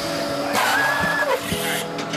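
Robotic milking machine working with a hiss and a whine lasting just over a second, over steady background music.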